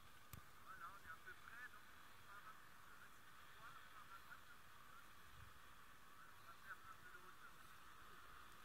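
Near silence of an open field, with faint scattered high chirps of birds calling at a distance.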